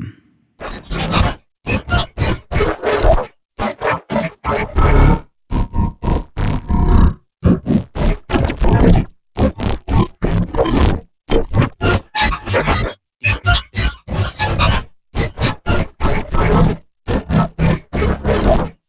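A robot voice line driven through Reformer Pro, its words replaced by gritty engine-synth sound library layers that keep only the cadence of the speech. Short phrases come again and again with brief gaps, the timbre changing as the blend moves between the high, low, mid and 'Psychological' layers.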